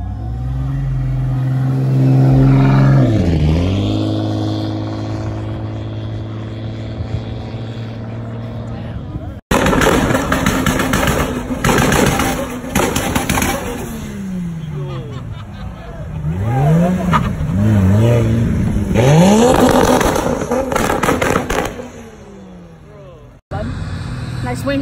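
A Toyota Supra's engine runs loud and steady as the car pulls away, its pitch dipping briefly and coming back a few seconds in. After a cut, another sports car's engine is revved hard in a string of quick up-and-down blips, with bursts of crackle, as it drives out.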